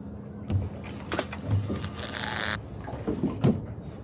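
A spinning fishing reel is wound in after a cast, giving a whirring ratchet burst in the middle, with small knocks and clicks of tackle being handled on the boat.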